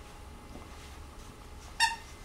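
A dog's squeaky toy squeaks once, short and sharp, near the end as a puppy bites it.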